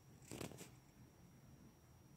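Near silence: faint room tone, with two quick faint clicks about half a second in.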